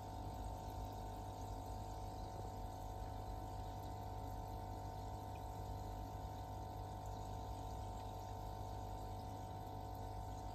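Quiet, steady running of an aquarium's filter and aeration: water moving and bubbling over a constant low hum from the pump.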